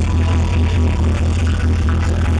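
Trance music from a DJ set played loud over a club sound system, with a heavy, steady pulsing bass beat.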